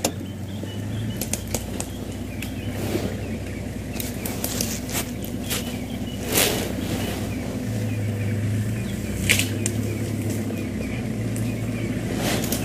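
Game-drive vehicle's engine running at idle, a steady low hum, with scattered clicks and crackles over it.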